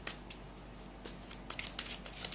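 A tarot deck being shuffled by hand: quick papery card snaps that ease off for the first second and a half, then pick up again.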